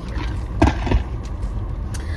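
Steady low rumble of a car idling, heard from inside the cabin, with a short louder sound a little over half a second in.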